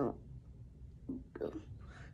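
A child's faint breathy whisper at the lips: two short soft sounds a little over a second in, otherwise quiet.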